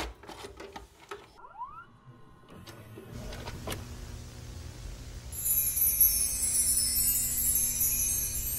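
Videocassette recorder sound effect: a few clicks, then the tape mechanism's motor whirring steadily and growing louder. A bright hiss like tape static joins about five seconds in.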